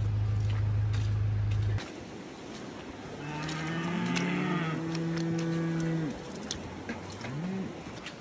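Cattle mooing: two long moos overlap from about three to six seconds in, and a short rising moo follows near the end. A steady low hum stops about two seconds in.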